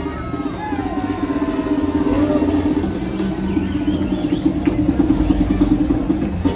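A car engine running steadily close by, with a rapid flutter to its note.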